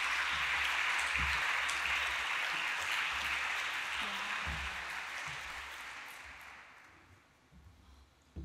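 Audience applauding, steady at first and then dying away about six to seven seconds in.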